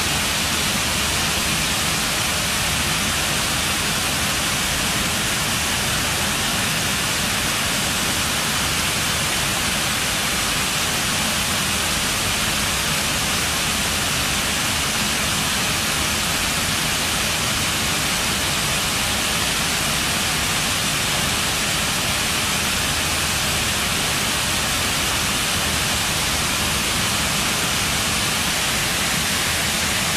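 Water cascading down a wall fountain: a steady, unbroken rushing.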